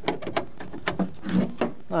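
Metal wheelchair tie-down strap fitting being handled and clipped onto a floor anchor: a handful of short sharp metal clicks and clunks.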